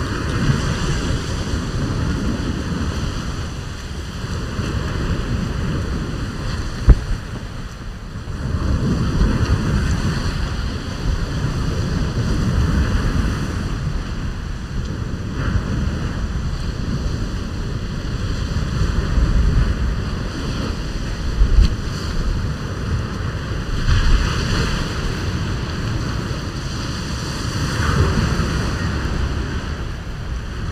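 Wind buffeting the microphone over the wash of surf breaking on the beach, rising and easing in gusts every few seconds. Two sharp clicks cut through it, the first, about seven seconds in, the loudest sound.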